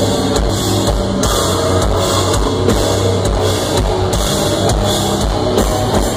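Metalcore band playing live: distorted electric guitars over drums with a quick, repeated kick-drum beat, loud and dense as heard from the crowd.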